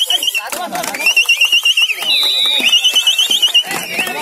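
Pea whistle blown in trilling blasts: three stretches of a fast warble, about nine wobbles a second, with a short steady note between the second and third. Voices shout underneath.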